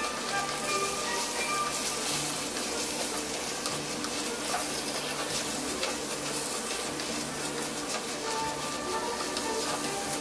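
A spoon stirs vegetables and ground coconut in a clay pot with a steady sizzling hiss, under background music with long held notes.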